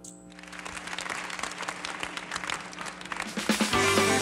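Applause building up after a song ends, then a loud accompaniment track with guitar starts near the end.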